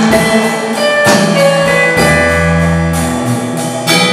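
Instrumental break in a worship song: an electronic keyboard plays held chords over a steady drum beat, without singing.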